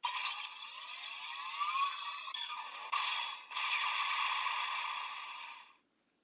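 Electronic sound effects from an Attache Calibur toy blade's small speaker, after the Rushing Cheetah key has been read: a burst of rising synthesized glides, then a sustained buzzing charge-up sound. It dips briefly about three and a half seconds in and stops abruptly near the end.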